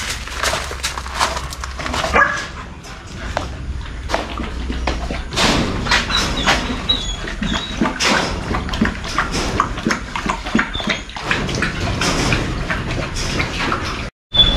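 Rottweiler feeding from a stainless steel bowl: many quick, irregular clicks and clinks of mouth and tongue against the metal.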